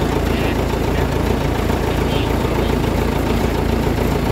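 Engine of an open-backed 4x4 truck idling steadily.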